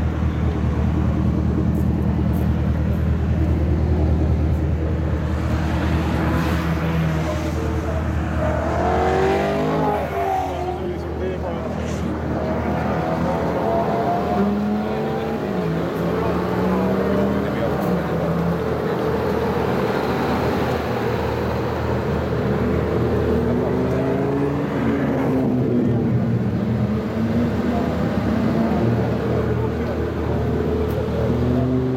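Supercharged V8 of a Mercedes CLK63 AMG Black Series idling steadily, strongest in the first several seconds, with people talking over it later on.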